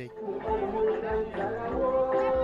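A group of children's voices chattering and calling out over one another, growing fuller about half a second in.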